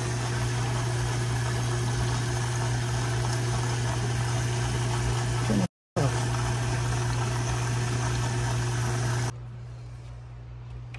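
Hot tub jet pump running: a steady low motor hum under the rush of water churning through the jets. It cuts out for a moment about six seconds in, and gives way to quiet room tone near the end.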